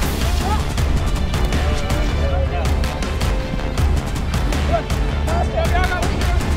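Soundtrack music with a heavy, steady low beat and sharp percussion hits.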